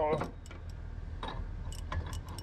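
Light metal clinks as a 55 mm socket and ratchet handle are handled on the jet pump's shaft nut, over a steady low hum.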